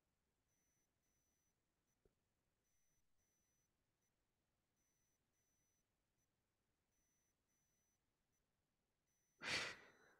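Near silence on an online call, broken near the end by one short breath into a microphone.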